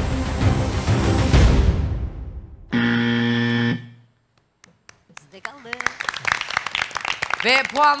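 Game-show suspense music fades out, then a single loud, steady buzzer sounds for about a second: the wrong-answer buzzer, as the guess 'tester' is not on the board. Voices rise in the last few seconds.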